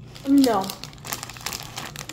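Plastic candy bag crinkling in quick, irregular crackles as it is handled.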